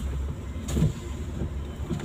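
Steady low rumble of a car's engine and tyres heard inside the cabin while driving, with one faint knock a little under a second in.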